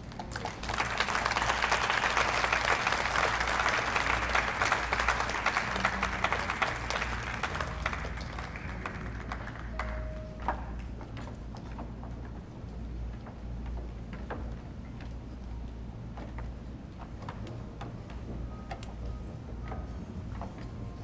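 A crowd applauding. The clapping swells about a second in and dies away around ten seconds in, leaving quieter room noise with scattered small knocks.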